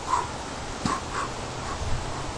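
Corgi puppy making about four brief, separate vocal sounds.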